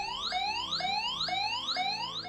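Home motion-sensor alarm sounding, set off by movement into the room: a rapid electronic chirp that rises in pitch, repeated about three times a second.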